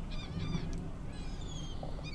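Birds calling: a run of short, high chirps in quick succession, then a few thin whistles gliding in pitch in the second half, over a faint outdoor background hum.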